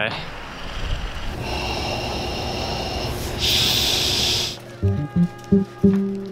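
A steady rushing noise with a louder hiss about three and a half seconds in, then background music with a rhythmic plucked beat starting near the end.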